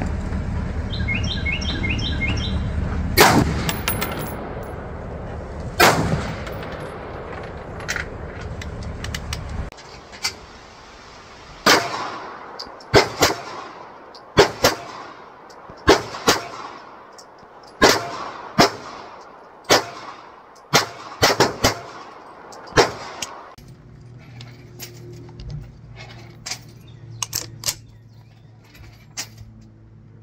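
Gunshots at an outdoor range: a few single AR-15 rifle shots several seconds apart, then a string of handgun shots about a second apart, then fainter shots near the end.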